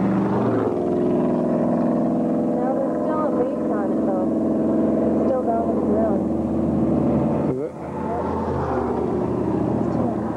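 A vehicle engine running steadily, with a brief drop in level a little past three-quarters of the way through, under indistinct voices.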